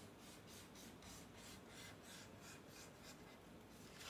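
Felt-tip marker drawing on paper: faint, quick scratchy strokes, about four a second, as short zigzag lines are inked back and forth.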